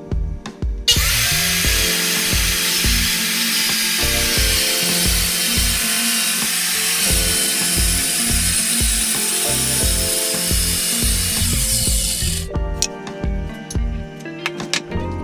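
Circular saw cutting through 3/4-inch Baltic birch plywood. It starts about a second in, cuts steadily for about eleven seconds and stops near the end, over background music with a steady beat.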